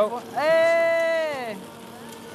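A woman's voice holding one long, level vocal note for about a second, then falling away.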